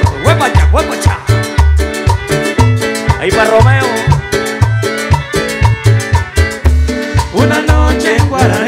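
Live Latin dance band playing an instrumental passage between sung verses: a steady pulsing bass line with drums and percussion under melodic instrument lines.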